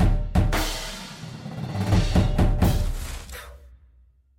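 Percussion ensemble drums playing the closing hits of a show: a loud hit, a second a third of a second later, then a quick cluster of hits about two seconds in. Deep low drum sound rings under the hits and fades away to silence near the end.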